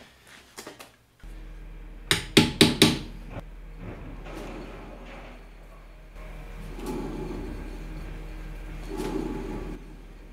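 Four quick, sharp hammer blows on metal about two seconds in, over a steady low hum.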